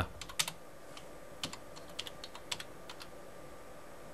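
Typing on a computer keyboard: faint, irregular key clicks, a handful at a time with short pauses between.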